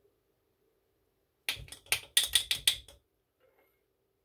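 A spoon clinking against a glass mason jar as sweetened condensed milk is spooned into iced coffee: a quick run of about eight sharp clicks over a second and a half, starting about halfway through.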